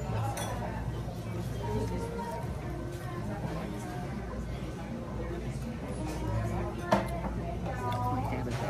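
Restaurant dining-room background of faint music and distant voices, with light clinks of cutlery and dishes; one sharp clink of metal on a plate, the loudest sound, comes about seven seconds in.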